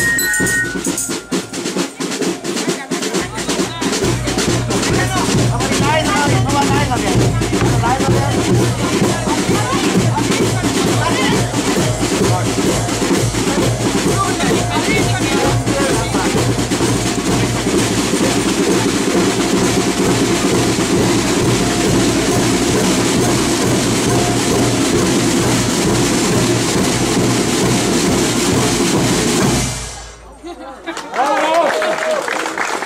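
Snare and bass drums of a fife-and-drum corps playing a continuous, driving beat, with voices over it; the drumming cuts off abruptly near the end.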